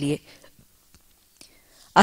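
A woman's voice ends a word just after the start, followed by a pause of almost two seconds that holds only faint mouth clicks and a soft breath.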